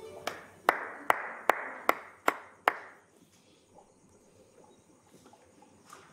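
One person clapping slowly, seven even claps about two and a half a second, stopping about three seconds in.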